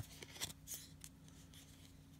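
Faint handling of a small stack of mini trading cards: a few light clicks and rubs in the first second, then near silence.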